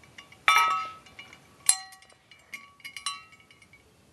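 Small hard objects clinking and clicking together, with three louder ringing clinks about half a second, a second and a half, and three seconds in.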